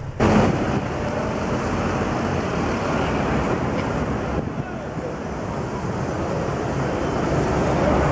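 Wind buffeting a handheld compact camera's microphone over steady city street noise of traffic and crowds.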